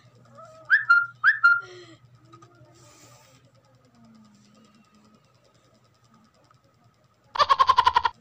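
A small pink plastic noisemaker sounded close up. About a second in it gives two short whistling squeaks, each dropping slightly in pitch; near the end it gives a loud buzzing squeal of under a second with a fast flutter.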